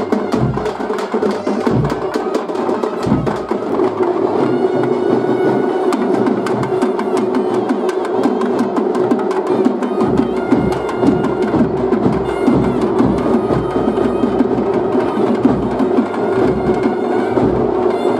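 Music led by rapid, dense drumming, over a steady held tone underneath; higher sustained melodic notes join about four seconds in.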